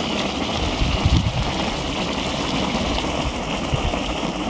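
A geothermal hot spring vent bubbling and spattering, with a steady rushing hiss of steaming water.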